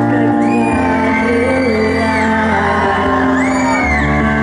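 A live pop song played loud over a hall PA: a woman singing into a microphone over a backing track. Two long, high shrieks glide over the music, one from about half a second to two seconds in and another near the end.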